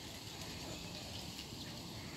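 Steady, fairly quiet outdoor background noise with no distinct sound standing out.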